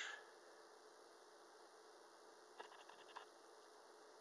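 Near silence with a faint steady hum, broken about two and a half seconds in by a short run of faint clicks from a signal generator's rotary knob being turned to raise the frequency.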